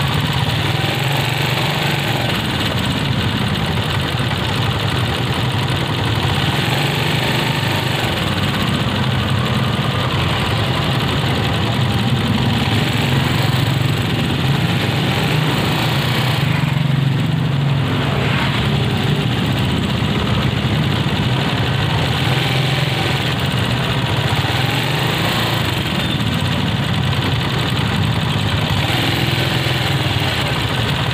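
Small motorcycle engine running steadily at low revs close to the microphone, a continuous low hum with a brief change in tone about halfway through.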